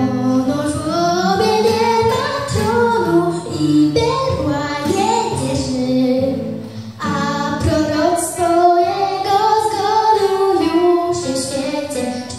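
A young girl singing a Polish Christmas carol (kolęda) into a microphone, with acoustic guitars accompanying her. The melody runs in long held notes, with a short breath about seven seconds in.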